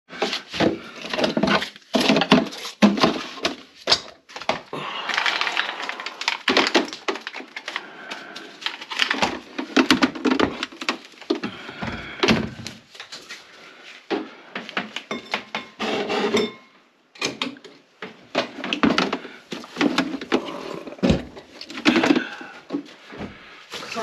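A person talking, with repeated knocks and clunks from things being moved in and around the open cabinet under a kitchen sink.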